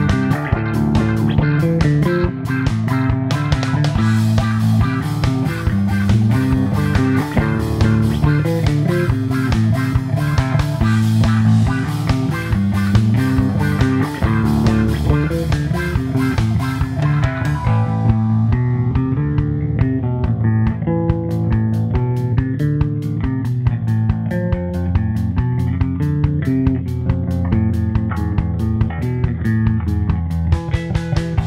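Electric bass guitar, plucked with the fingers, playing the melody of a pop song over a backing track with a steady drum beat. About eighteen seconds in the bright top of the beat falls away, and it builds back up over the last few seconds.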